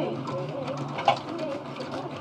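Low, continuous murmur of voices in a live-casino studio, from other dealers talking at nearby tables, with one short sharp click about a second in.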